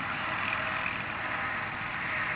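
Steady outdoor background noise, an even hiss with a faint thin high whine running under it.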